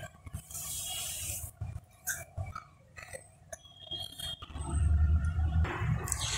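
Quiet, scattered small clicks and taps of plastic bottle-cap wheels and thin stick axles being handled and set down on a tabletop.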